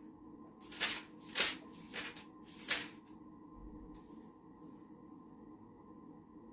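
Bible pages being turned by hand: four quick paper rustles in the first three seconds, then two fainter ones.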